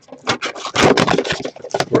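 Cellophane shrink wrap crinkling and cardboard rubbing and scraping as a sealed Upper Deck The Cup hockey card box is unwrapped and its inner box is slid out, a rapid, irregular crackle.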